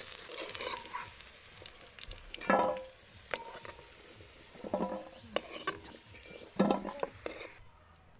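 Turmeric-coated potato cubes sizzling as they fry in a little oil in an aluminium kadai, while a metal spoon stirs and scrapes against the pan to scoop them out. A few brief pitched sounds stand out over the frying, and the sizzle cuts off suddenly near the end.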